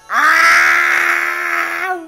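A woman howling like a wolf: one long, loud held note that starts suddenly and cuts off near the end.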